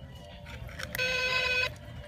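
A steady electronic buzzing tone from an animated Halloween prop's small speaker, starting about a second in and cutting off abruptly after under a second.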